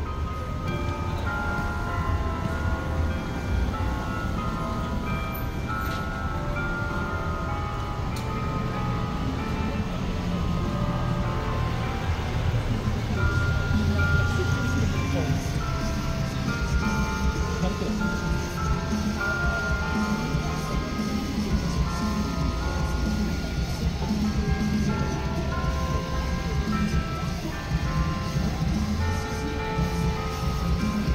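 Church bells playing Christmas carols, a continuous melody of struck notes, over a steady low rumble of city traffic.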